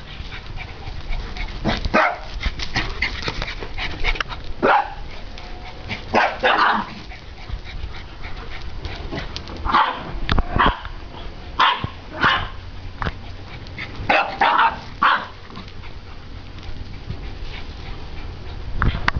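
Two dogs play-fighting, a small long-haired dog and a larger grey wolf-like dog, giving short barks and yips in bursts every few seconds.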